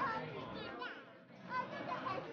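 Background chatter of people, including children's voices.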